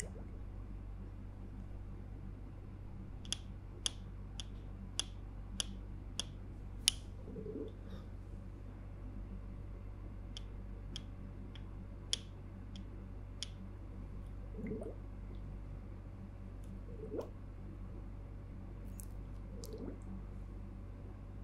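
Close-miked ASMR mouth sounds: a run of seven sharp wet clicks, about one every half second, a few seconds in, then scattered single clicks and a few soft, low squishes.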